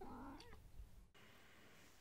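A faint, short cat meow from a sound-effect recording in the first second, then near silence after an abrupt cut.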